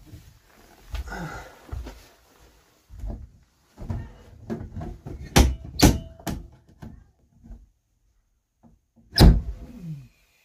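A bus's roof emergency exit hatch being climbed through and pulled shut, with a string of knocks and rustling, two heavy thumps about five and a half seconds in, and another heavy thump near the end.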